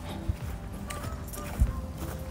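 Footsteps on a grass lawn, heard as two soft low thuds about a second and a half apart over a steady low outdoor background.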